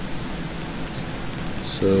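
Steady background hiss of the recording, with no other sound; a man starts speaking near the end.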